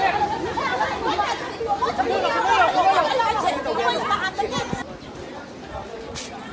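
Several people talking loudly over one another, a jumble of unintelligible voices. A little before the end it cuts to quieter background noise.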